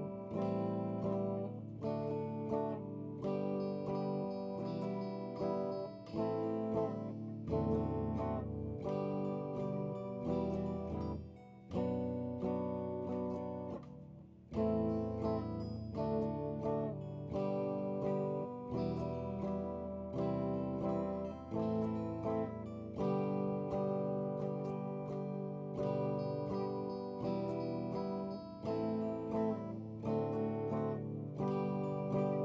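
Electric guitar strumming chords in a steady rhythm, with two brief dips in level about 11 and 14 seconds in.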